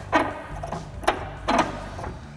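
Steel tow hook being fitted by hand into the threaded port in a plastic front bumper, giving a few separate clicks and scrapes about every half second.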